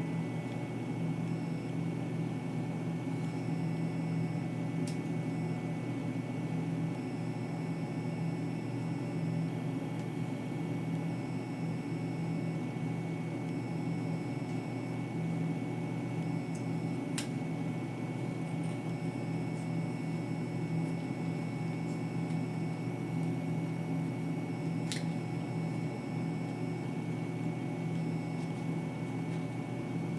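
A steady low machine hum with a thin high whine runs throughout. Three faint sharp snips of small scissors cutting into a ball python eggshell come about five seconds in, past the middle, and near the end.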